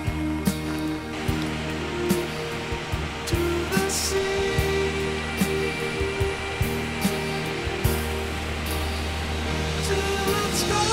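Water pouring over a dam spillway, a steady rush that comes in about a second in, under a slow song's instrumental passage with held chords and soft regular beats.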